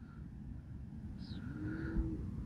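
A distant motor vehicle over a low rumble, its engine note rising in pitch near the end.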